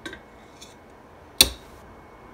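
One sharp metallic clank about one and a half seconds in, as the stainless steel stackable pot on its wire trivet knocks while being lifted out of the pressure cooker's inner pot.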